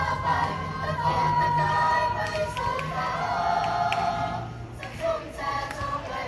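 A mixed choir of girls and boys singing a song together, with a short break between phrases about five seconds in.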